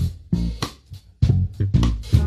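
A live church band playing upbeat gospel music: bass guitar and guitar with sharp drum hits, dipping briefly about halfway through.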